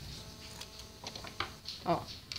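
Scissors cutting off the excess of sewn-on bias tape: a few quiet snips, the loudest near the end, with some rustling of the fabric.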